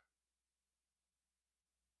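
Near silence: a pause between sentences of narration, with only a very faint hum.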